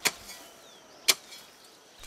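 Two sharp knocks about a second apart, over a faint background hiss.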